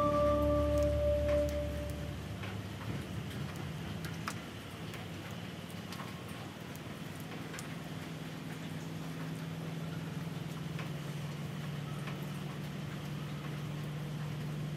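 Steady rain hiss with scattered light drip ticks, after a music tail that fades out in the first two seconds.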